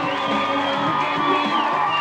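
Studio audience cheering, with pop music playing underneath.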